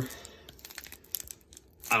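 Foil trading-card pack crinkling faintly as it is handled and torn open by hand: a few scattered soft crackles.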